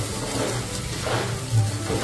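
Raw rice sizzling in oil in a pot while a spatula stirs it, toasting before the water goes in, as a steady hiss under quiet background music.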